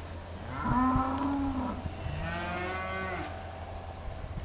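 Angus-cross heifers mooing: two long moos, one starting about half a second in and a second starting about two seconds in, each held for about a second.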